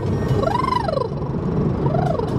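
A woman's lip-trill vocal warm-up: her voice buzzes through pursed lips as it glides up in pitch and falls back, with a new glide starting near the end. Steady car road noise sits underneath.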